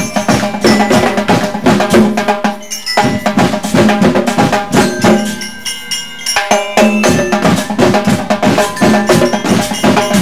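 A band playing: drums and bright mallet percussion beat out a steady rhythm with ringing pitched notes. The drums drop out for about a second and a half past the middle, then come back in.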